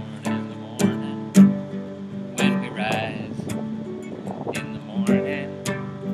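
Nylon-string classical guitar strummed in a steady rhythm while a man sings a slow folk melody.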